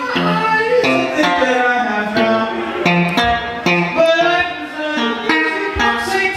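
A man singing a melody into a microphone while strumming guitar chords at a steady beat.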